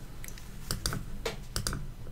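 Computer mouse clicking: a string of short, sharp clicks, several in close pairs, as on-screen word tiles are selected one after another.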